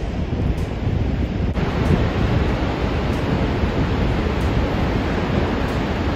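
Steady, loud rush of Niagara Falls' Horseshoe Falls, heavy in the low end, with wind buffeting the microphone.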